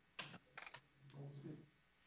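Near silence with a few faint short clicks in the first second and a brief faint murmur of a voice about a second in.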